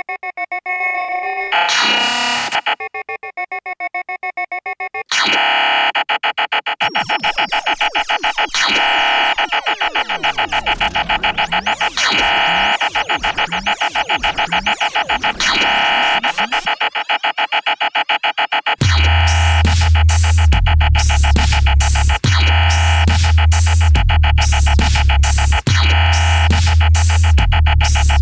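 Live electronic music on synthesizers: held keyboard chords at first, then from about five seconds in a fast repeating synth pattern with pitch sweeps gliding up and down. Near the end a heavy deep bass line and regular drum-like hits come in, in a dubstep style.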